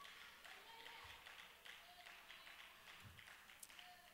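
Near silence: quiet room tone with only faint, indistinct sounds.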